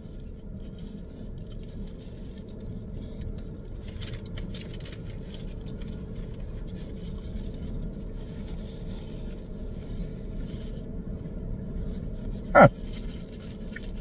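A man chewing a mouthful of burger over the steady low hum of a car cabin, with faint paper rustles. Near the end comes one short hummed "mm" that falls in pitch.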